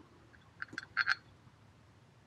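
A few short, light clicks of bolts being pushed through the holes of a new aluminium water pump and its gasket, clustered about a second in.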